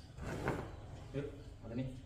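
A heavy tufted carpet scrapes and rustles across a work table as it is shifted and fed, with the loudest scrape about half a second in. A steady low hum runs underneath, and a couple of short muffled voice sounds follow.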